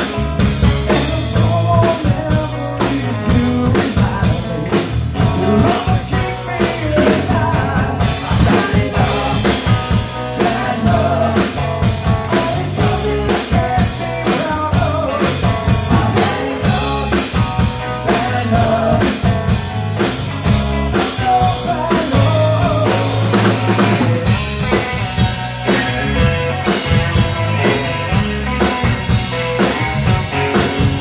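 Live rock band playing: drum kit keeping a steady beat under electric bass, with an electric guitar's melody lines bending in pitch above.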